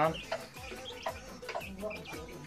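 A bird calling in several short, quiet notes in the background, with one slightly longer pitched call near the end.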